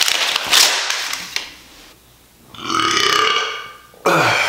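Paper pages of a spiral notebook rustling as they are flipped. After a short pause comes a loud, drawn-out wordless vocal sound from a man, about a second long.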